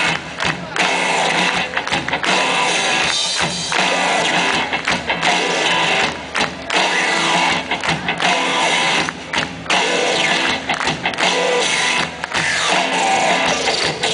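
Live pop band playing an instrumental passage with no singing, loud and steady, recorded from the audience.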